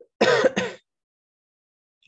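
A man clearing his throat once, a short rough two-part rasp lasting about half a second.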